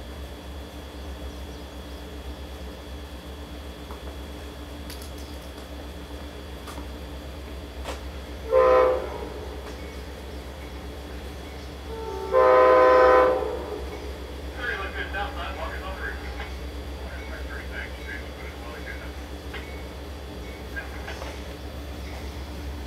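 Amtrak train 30's locomotive horn, approaching: a short blast about eight and a half seconds in, then a longer blast of about a second a few seconds later.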